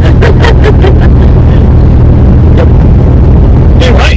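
Loud steady low rumble of a vehicle on the move, heard inside the cabin, with a man's brief laughter in the first second.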